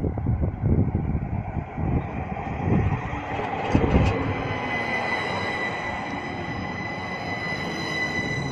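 Stadler Tango low-floor tram heard from inside the car: a low rumble, a couple of clicks around four seconds in, then a steady high whine of several tones from its electric traction drive through the second half.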